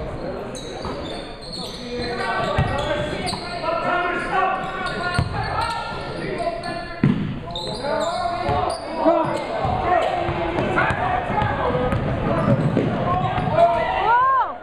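A basketball dribbled on a hardwood gym floor in repeated thuds, amid indistinct shouting and chatter from players and spectators in a large gym.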